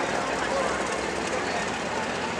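Light pro stock pulling tractor's diesel engine running steadily at the starting line, with a faint murmur of voices around it.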